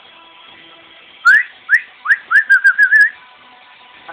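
A person whistling a run of short upward-sliding chirps, starting about a second in and coming faster until they run together into a warble, to call a pet sugar glider to come.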